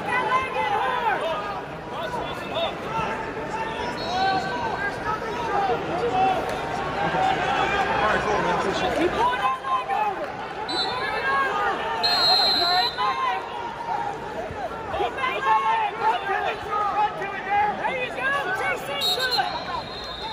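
Arena crowd noise: many voices shouting and chattering over one another. A few short, high whistle blasts cut through, about four seconds in, twice around eleven to thirteen seconds, and near the end.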